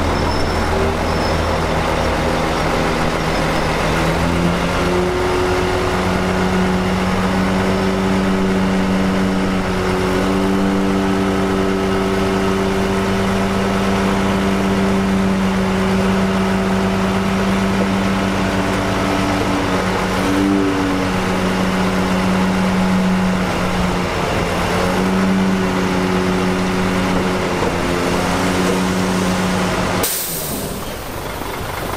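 Loaded dump truck's diesel engine running steadily under load; its pitch steps up about four seconds in and holds, with a brief dip about twenty seconds in.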